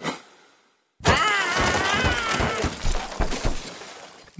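Cartoon crash sound effects for a snowboarder's wipeout: a sharp hit, a second of silence, then a run of cracking, smashing impacts with a wavering high cry over them, fading out. The cracks stand for bones breaking in the fall.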